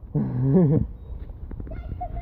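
A man's short wordless vocal sound with a wavering pitch. A few light clicks follow, then a child's high-pitched call begins near the end, all over a low rumble.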